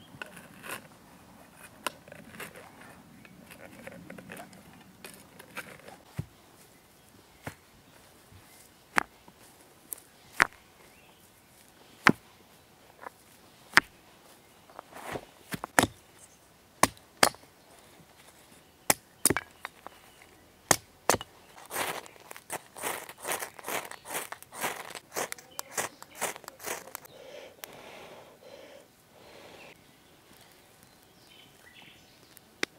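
Hatchet splitting kindling: sharp single strikes every second or two, then a quick run of many small cracks and rustles of wood near the end.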